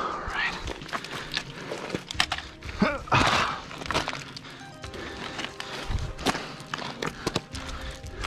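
Background music over footsteps and small stones clicking and shifting on loose volcanic scree during a climb, with a louder scrape about three seconds in.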